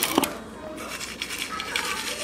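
Refrigerator-door ice dispenser dropping crushed ice into a glass: a click as the lever is pressed, then a steady rattle of ice pouring in.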